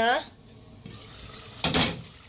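A glass saucepan lid is lifted off a pot of simmering stew, giving one short clatter near the end, after a faint stretch of simmering.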